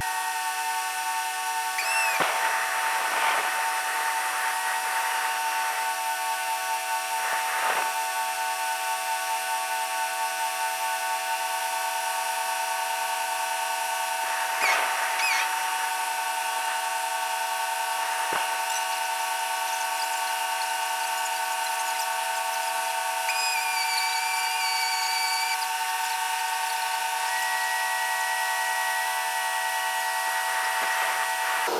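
A steady whine made of several held tones, with a few brief scuffs or rustles over it and some short wavering whistles.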